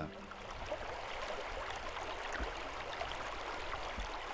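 Steady rush of flowing river water, an even hiss with no distinct events.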